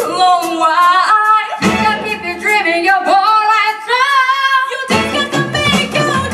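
Female lead-and-backing vocal group singing a soul/R&B number with held, gliding notes over a live band with horns, guitar and bass. The band's low end drops away for a second or so twice, leaving the voices nearly alone.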